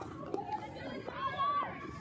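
Chatter of several people's voices calling out over one another.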